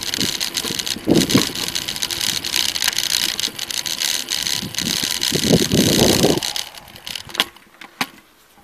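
Wind rushing over the microphone with road noise from a bicycle rolling along a tarmac lane, with a few heavier gusts, dying away near the end as the bike stops, and one sharp click just before it goes quiet.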